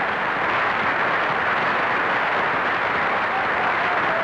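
Studio audience applauding steadily, a dense, even clatter of many hands clapping.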